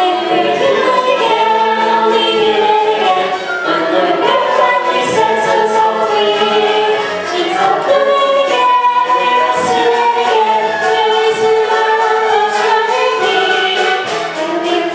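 An ensemble of voices singing together in chorus over musical accompaniment.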